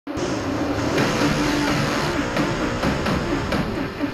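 Dirt-track race car engines running hard, their pitch rising and falling as they rev.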